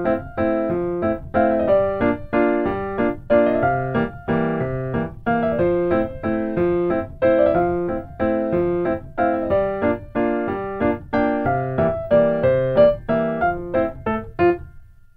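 Solo piano playing a gentle waltz, with evenly repeated chords under a simple melody.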